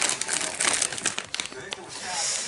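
Crinkling of a Takis chip bag as a hand rummages inside it for chips, an irregular rustling crackle that eases off near the end.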